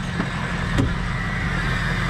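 A 2004 Ford F-350's 6.0-litre Power Stroke V8 turbo diesel idling steadily, with one light click a little under a second in.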